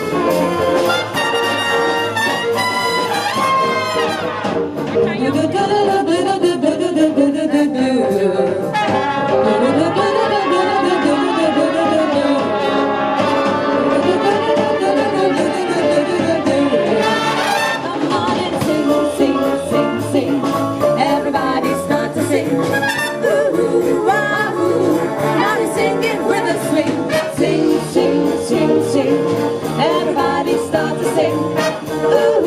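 Live big band playing swing jazz: trumpets, trombones and saxophones over a drum kit, continuous and loud.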